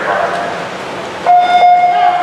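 Swim-race start signal: a loud, steady electronic beep starts suddenly just over a second in and holds, sending the swimmer off the block.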